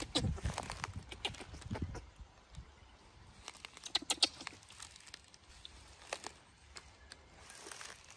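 Footsteps through tall grass and scrub, with scattered crackles and snaps of dry twigs and stalks and a rustle of leaves.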